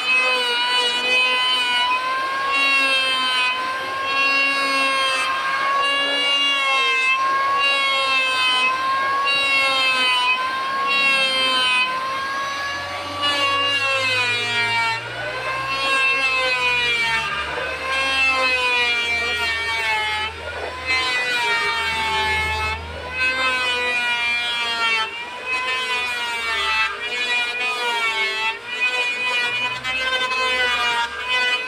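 Electric hand planer running continuously as it shaves a solid wood door frame. Its steady whine dips and rises slightly in pitch with each pass as the cutter takes load.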